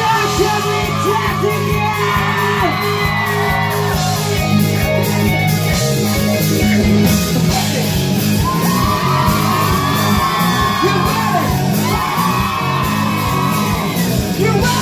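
A live rock band in a club: a male singer sings and shouts into a microphone over electric guitar and a steady bass line, with the echo of the room around them.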